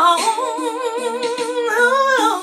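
A woman singing a long held note without words, gliding up into it at the start and holding it with a wide vibrato, then rising a little near the end.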